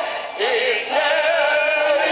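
A group of men singing a song together, their voices wavering with vibrato; a brief break between phrases comes about half a second in, followed by a long held note. The sound is thin and dulled, as heard from a television broadcast.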